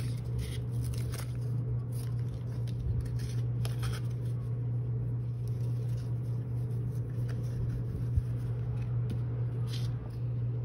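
Soft rustles and light clicks of a satin ribbon being handled and tied onto a paper gift tag, mostly in the first few seconds, with one sharper click about eight seconds in. Underneath runs a steady low hum.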